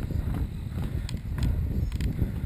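Mountain bike rolling fast over a dirt singletrack trail: a steady low rumble from the tyres and the riding, with sharp clicks and rattles from the bike.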